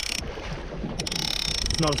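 Fifty-wide lever-drag game reel ratcheting with rapid fine clicks while a big shark pulls on the line. Wind is buffeting the microphone.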